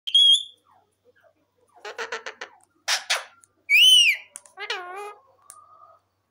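Indian ringneck parakeet calling: a short high whistle, a quick stutter of chattering notes, and two loud calls that rise and then fall, the second lower.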